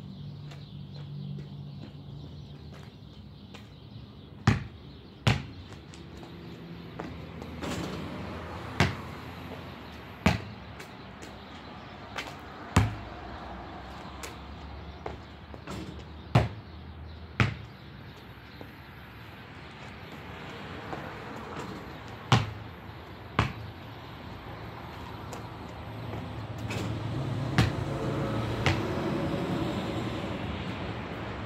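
Basketball bouncing on a concrete driveway and striking the hoop: about a dozen sharp single thuds at irregular intervals over a steady low rumble that grows louder near the end.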